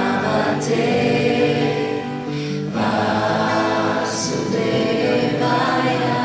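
Devotional kirtan singing: voices chanting a mantra in sung phrases over two strummed acoustic guitars.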